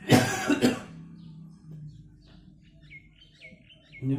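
A man coughs twice in quick succession, then falls quiet.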